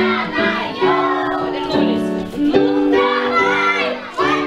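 Children singing a New Year round-dance song along with instrumental accompaniment, the music playing without a break.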